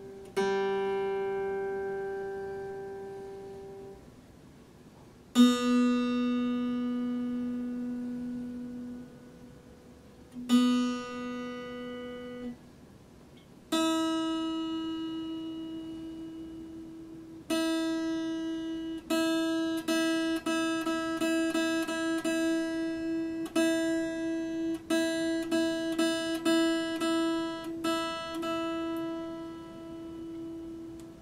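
Epiphone acoustic-electric guitar being tuned: a few single strings plucked and left to ring out for several seconds each, then one note plucked again and again, a couple of times a second, as the tuning peg is adjusted.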